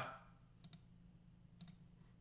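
Near silence with two faint clicks about a second apart.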